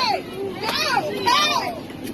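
People yelling in high, strained voices: two long yells, one after the other, amid commotion in an airliner cabin.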